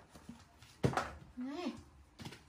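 A sharp knock a little under a second in, followed by a short vocal sound that rises and falls in pitch.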